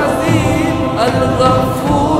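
Devotional song: a male voice sings a long melismatic line with wavering vibrato, backed by a chorus and instrumental accompaniment.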